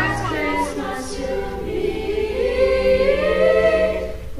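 Large mixed choir of young voices singing unaccompanied, the parts moving early on and then settling into a long held chord that grows louder over the last second and a half.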